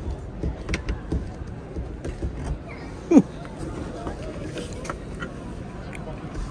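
Clicks and knocks of a camper van's sliding interior door and its push-button latch being worked open. About three seconds in there is one brief sound that falls in pitch. Background chatter runs underneath.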